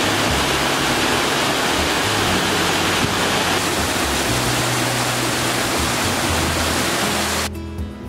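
Stream water rushing steadily over rocks and a small waterfall in a rock gorge, with background music underneath. The water cuts off suddenly about half a second before the end, leaving the music.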